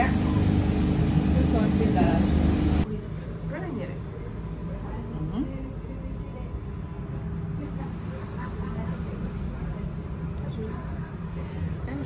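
Voices talking over a steady low hum. About three seconds in the sound cuts abruptly to a quieter stretch: a fainter steady hum with faint voices.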